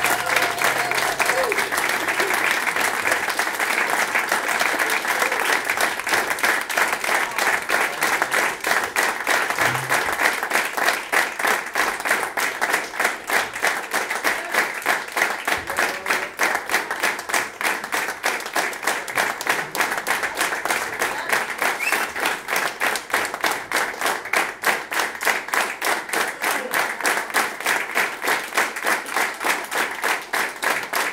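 Concert audience applauding, with some voices in the crowd; from about ten seconds in the clapping falls into a steady rhythm, clapping in unison.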